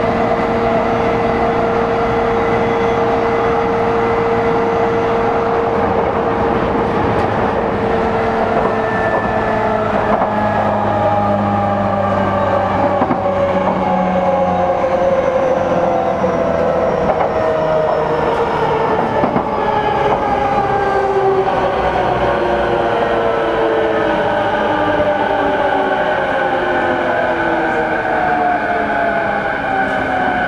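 JR East E233 series motor car running on the Chuo Line Rapid, heard from inside the car: a steady run of rail noise with motor whine, whose several tones slowly fall in pitch from about ten seconds in as the train slows.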